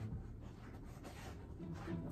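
Faint rustling and rubbing of clothing and bedding as two people shift against each other on a bed.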